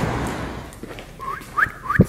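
Wind noise on the microphone dies away, then three short rising whistles, each a quick upward glide, come in the second half.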